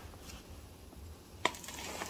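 Quiet potting work with a single sharp click about one and a half seconds in, from the plastic scoop and gravel being handled around the pot.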